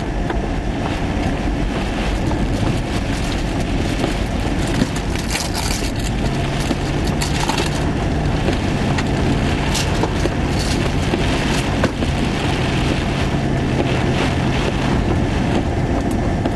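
Strong wind and rain battering a vehicle, heard from inside the cabin, with many sharp ticks and knocks of rain and falling debris striking the windshield and body. A steady low hum comes in about six seconds in and fades near the end.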